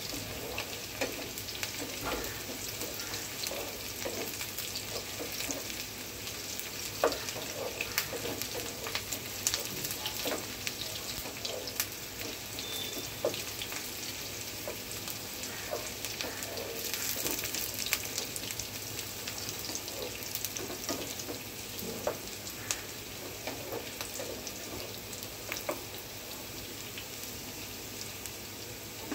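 Chopped onion frying in hot oil in a nonstick pan: a steady sizzle with scattered crackles and pops. A wooden spatula stirs it now and then, with occasional clicks against the pan.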